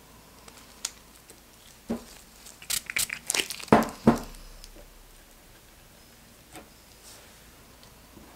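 Gloved hands handling small objects and a spray bottle on a worktable: a cluster of clicks, taps and rustles about two to four seconds in, ending in two louder knocks, then a single light tap later.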